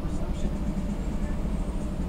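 A steady low background hum with no change in level, with a few faint light clicks about half a second in.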